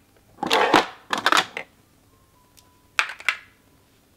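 Lipstick tubes and clear acrylic organizer trays clicking and clattering together as lipsticks are handled and slotted into place, in three short bursts with a quiet stretch before the last one.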